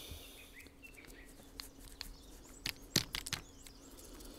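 Quiet bench work: a few light clicks as a small jointed wooden lure is handled, the loudest about three seconds in. Faint bird chirps sound in the background near the start.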